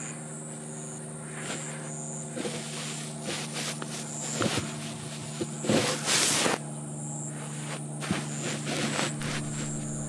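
Quiet outdoor field ambience: a steady low hum and a high, evenly pulsing insect drone, with scattered small clicks and rustles and one louder hissing rustle about six seconds in.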